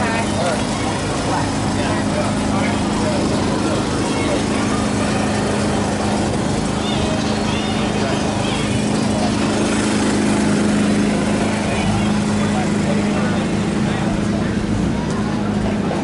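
A steady low motor hum, with people talking in the background.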